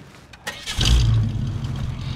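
Ford Mustang V8 being started: a brief crank about half a second in, then it catches with a loud rise in revs and settles into a steady idle.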